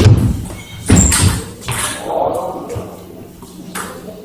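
Table tennis rally: a few sharp ball strikes on bats and table, loudest in the first second and a half, mixed with voices in the hall.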